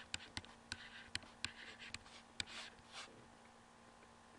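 Stylus writing by hand on a tablet: a series of sharp taps with short scratchy strokes between them, ending in a longer stroke about three seconds in.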